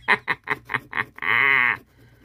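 A man laughing: a quick run of short 'ha' pulses, then one drawn-out, wavering laugh near the end that stops abruptly.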